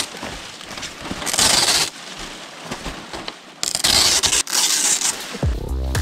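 Large palm fronds rustling and crackling in three bursts as they are handled and split for thatching. Background music with a heavy bass beat starts near the end.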